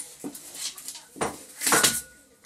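Border collie tearing and rustling torn cardboard with its mouth, in irregular scratchy bursts, the loudest near the end.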